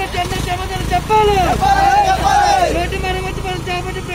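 Men's voices talking over a steady low engine rumble from a vehicle.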